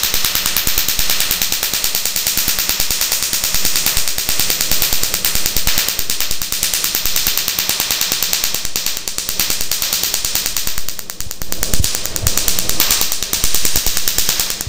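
Q-switched laser firing over a carbon mask on the nose in a carbon laser peel: a rapid, steady train of sharp crackling snaps, one for each pulse that strikes the carbon, with a brief lull a little after the middle. The snapping comes from the dark carbon taking up the laser; on bare skin it goes silent.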